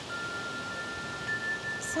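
Wind chimes ringing: one clear held tone sounds just after the start, and a second, slightly higher tone joins it about halfway through.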